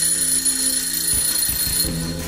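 An alarm clock ringing continuously, a steady high ring that stops near the end, sampled into a music track over a sustained low drone. Low bass thuds come in about a second in.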